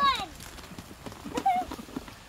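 Scattered light clicks and knocks, with a short vocal sound about one and a half seconds in.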